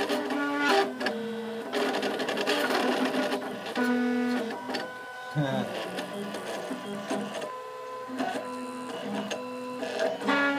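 3D printer stepper motors whining in steady pitched tones that jump to a new pitch every fraction of a second as the print head rapidly zigzags through infill.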